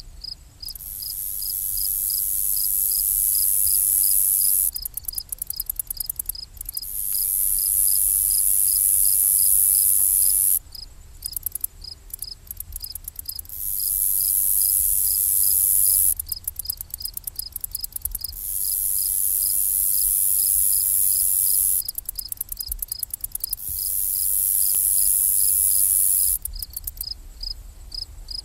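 Crickets and bush crickets singing. A steady run of chirps repeats two or three times a second, overlaid by a very high buzzing song that comes in bouts of three to four seconds, broken between bouts into stuttering pulses.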